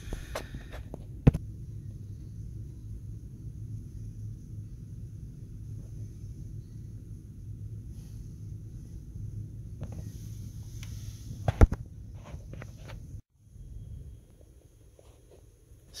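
Macintosh Plus running with a steady low hum, close to its vented case. Two sharp clicks come through, one about a second in and one about eleven and a half seconds in. The hum cuts off abruptly about thirteen seconds in.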